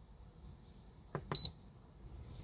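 Two clicks from the rotary knob of a Simrad AP44 autopilot controller being pressed, the second with a short high beep as the "No" answer is entered in VRF calibration.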